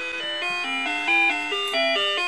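A simple electronic tune of clear, bell-like single notes stepping up and down, about five notes a second.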